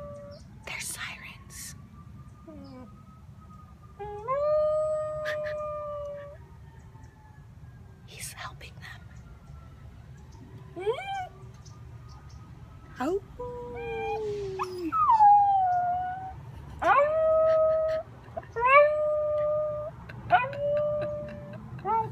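Dachshund howling: a string of drawn-out, high howls, some held level for a second or more and others sliding up or down, coming thick and fast in the second half.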